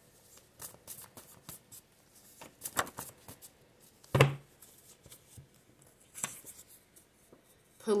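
Paper index cards being handled and sorted, with light rustles and small clicks throughout. A brief low vocal sound about halfway through.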